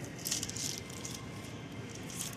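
Papery red onion skins rustling and crackling as a hand rummages through a bin of onions, with a few short crackles in the first second and fainter handling noise after.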